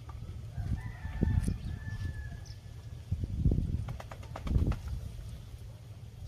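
A faint, drawn-out bird call starting about a second in, over several low rumbling thuds.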